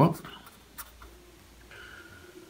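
Marker pen writing on paper: faint, scattered scratching strokes.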